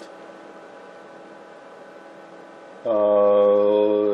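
Faint steady hiss and hum of bench electronics, then, about three seconds in, a man's long held "uhh" at a steady pitch.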